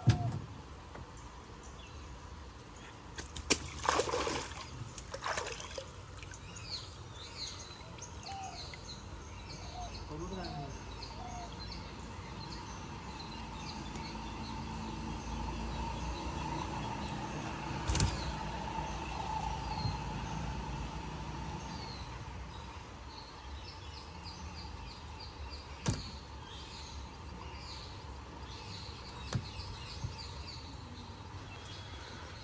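Water splashing and dripping as a gill net with fish is hauled over the side of a wooden boat, with a burst of splashing a few seconds in and sharp knocks against the hull near the start and at intervals after. Birds chirp throughout.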